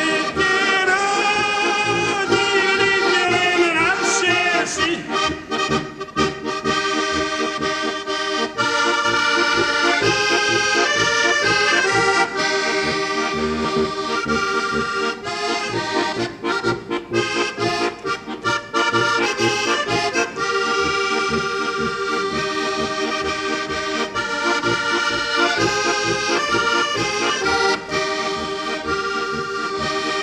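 Heligónka, a Slovak diatonic button accordion, playing a polka: a lively melody over a steady bass-and-chord beat.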